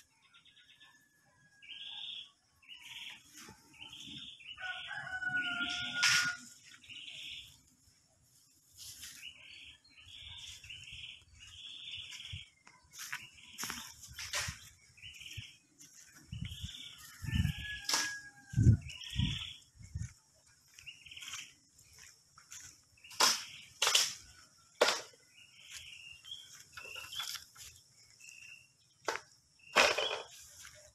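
A rooster crows twice, about five seconds in and again near the middle, over long runs of short, high, repeated chirps. Scattered sharp crackles and clicks run through it, and a few low thumps come just after the middle.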